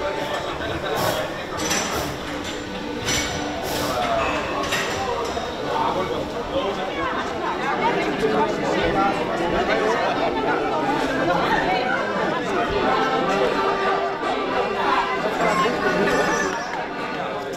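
Indistinct chatter of many people talking at once, with background music underneath.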